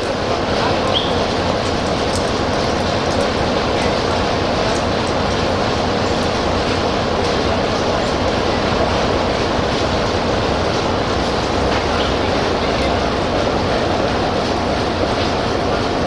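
Electroputere 060-DA (LDE2100) diesel-electric locomotive, with its Sulzer 12LDA28 engine, running steadily as it rolls slowly up along the platform. The sound swells slightly at the start and then holds even.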